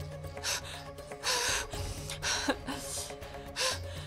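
A woman gasping and breathing hard in distress, about five ragged gasps in quick succession, over dramatic background music with a sustained low drone.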